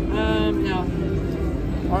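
A short spoken utterance near the start over casino-floor background noise and music with a steady low tone.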